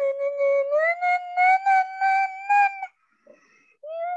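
A high-pitched voice holding one long sung or howled note that glides slowly upward and breaks off about three seconds in, with a few short rustling bursts over it.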